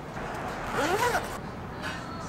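Café background noise with a rustle of handling about a second long. Partway through it comes a short human voice sound that rises and then falls in pitch, and a faint click follows near the end.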